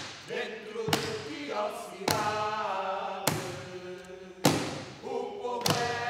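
Slow, evenly spaced heavy thuds, about one every second and a bit, under several voices holding long chanted notes that shift pitch now and then.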